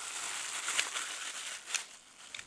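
Thin clear plastic bag crinkling as it is squeezed and turned in the hands, with a few sharper crackles.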